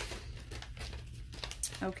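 Paper seed packet being handled and opened, rustling in irregular short crackles.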